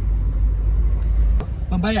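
Heavy low rumble inside a moving car's cabin. It thins out abruptly at a sharp click about one and a half seconds in, and a man starts speaking just before the end.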